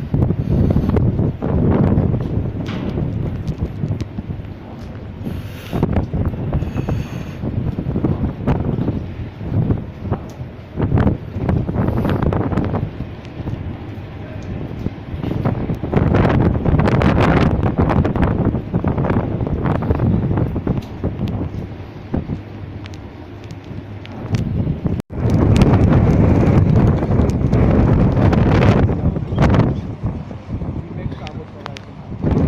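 Strong wind buffeting the microphone in loud, uneven gusts on the open deck of a ship in a storm. The sound cuts out for an instant about 25 seconds in.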